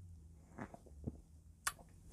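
Faint sounds of a man drinking beer from a glass: a couple of soft swallows, then a short sharp click near the end.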